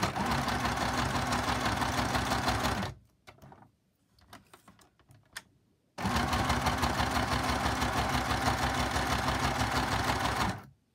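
Small John Lewis sewing machine running in straight stitch on a long stitch length, sewing through a paper journal card with a fast, even needle rhythm. It runs for about three seconds, stops for about three seconds with a few faint handling sounds, then runs again for about four seconds.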